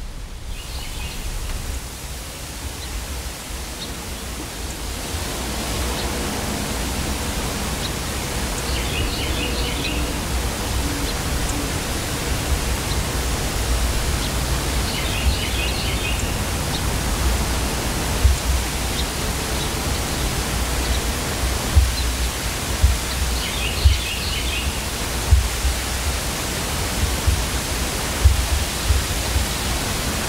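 Steady outdoor rushing noise in woodland. A bird gives a short chittering call three times, several seconds apart, and scattered low thumps come in during the second half.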